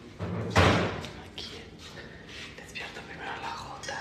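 A single dull thump about half a second in, the loudest sound, followed by quiet whispering and rustling.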